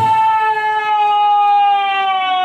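A male lead singer in a nagara naam devotional performance holds one long, high sung note that slowly falls in pitch, with the drums silent.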